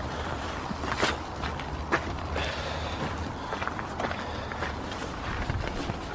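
Footsteps on gravel as a loaded touring bicycle is wheeled along, with a few sharp clicks and knocks from the bike and its panniers.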